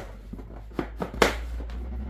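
Plastic poultry drinker being taken apart: a handful of light plastic knocks and clatters as the red base tray is worked off the reservoir, the loudest about a second and a quarter in, over a low rumble.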